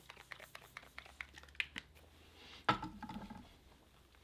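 Faint clicks, taps and rustles of makeup being handled and applied to the face by hand, with one louder sudden sound about two-thirds of the way through.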